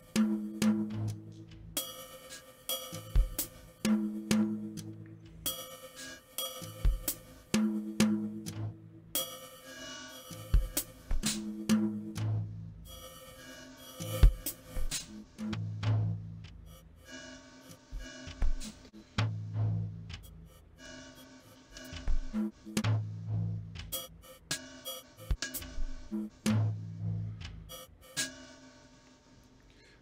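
A looped drum-machine beat from a phone app playing through two parallel granular modules on an Empress ZOIA pedal, the second module's grains set about 200 ms behind the first so echoes fade in and out between the hits. A fade control (a slew on the comparator gating) is being raised, which smooths the gating; the bright, sharp top end of the hits thins out in the second half.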